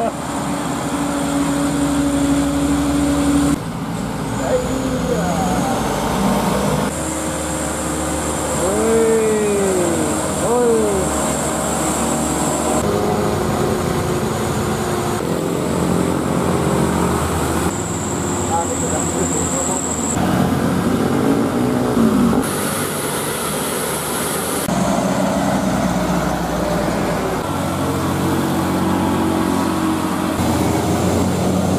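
Mitsubishi Canter dump trucks' diesel engines working hard up a hill under full beds of sand, in a series of passes that change abruptly from one truck to the next. A few short rising-and-falling tones sound over the engines in the middle of the run.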